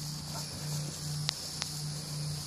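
Quiet outdoor ambience: a steady high insect drone over a low hum, with two short faint clicks a little past halfway.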